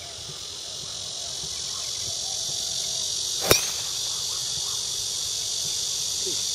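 A golf driver striking a teed ball once, a single sharp crack about three and a half seconds in, over a steady high-pitched insect chorus.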